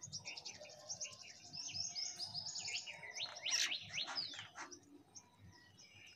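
Small birds twittering in a rapid, high-pitched chatter of quick chirps, densest in the first four and a half seconds, with a cluster of short falling notes a little past the middle, then thinning out.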